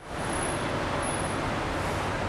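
Steady outdoor city noise: a low, even hum of road traffic.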